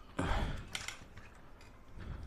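Plastic body and parts of a Bruder JCB Midi CX toy backhoe loader handled as it is turned over: a brief scraping rustle followed by a few light plastic clicks within the first second.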